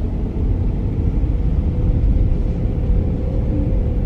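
Steady low rumble of a running car heard from inside the cabin, with a faint steady hum over it, the engine and air conditioning running.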